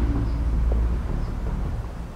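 A low outdoor rumble, loudest in the first second and then fading, with a faint short tick near the middle.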